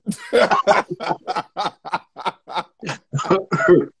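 Men laughing, a run of short breathy laugh pulses, about four a second.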